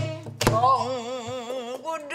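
Two sharp strokes on a sori-buk barrel drum as pansori accompaniment: one right at the start and one about half a second later. They are followed by a woman's voice holding a pansori note with wide, wavering vibrato for over a second.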